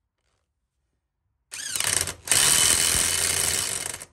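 Parkside 500 Nm electric impact wrench working a car wheel's lug nut: a short burst with the motor rising in pitch, a brief pause, then about a second and a half of loud, continuous impact hammering that stops just before the end.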